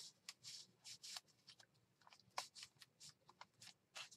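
Faint, scattered rustles and soft taps of paper as the pages and a tucked card of a handmade paper journal are handled and pressed flat.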